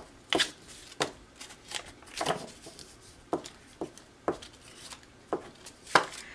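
Paper being handled on a tabletop: a string of short rustles and light taps, roughly one or two a second, as painted paper pieces are shifted and laid down.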